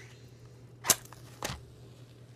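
A match struck twice against its striker: two short, sharp scrapes about half a second apart, the first the louder, and the match flares alight on the second to light a tobacco pipe.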